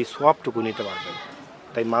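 A goat bleating once, a wavering call of under a second, between a man's words.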